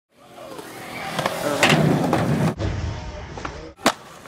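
Skateboard wheels rolling on concrete, growing louder, with three sharp clacks of the board. About halfway through, the sound cuts to a duller low rolling rumble, and a loud crack of the board comes just before the end.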